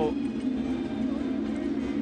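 Steady ballpark crowd murmur with a low, even hum underneath.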